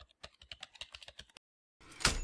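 Faint keyboard-typing sound effect: about a dozen quick key clicks over the first second and a half, as a title is typed out. Near the end a rising whoosh begins.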